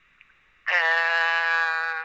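A speaker's drawn-out "äh" hesitation, held at one steady pitch for about a second and a quarter, starting a little over half a second in. Before it there is only a faint, thin hiss.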